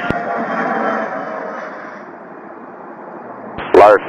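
Jet engine noise from a regional jet rolling past on the runway, fading steadily over about three seconds. A tower radio transmission cuts in loudly near the end.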